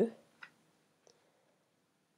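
The end of a spoken word, then two short, faint clicks of a stylus tapping a tablet while writing, the first about half a second in and a softer one about a second in.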